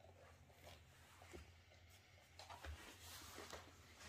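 Near silence: a low steady hum with a few faint, scattered small clicks and rustles, slightly busier in the second half.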